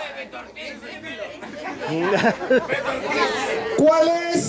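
A group of people chattering, with several voices overlapping at once and getting louder about halfway through.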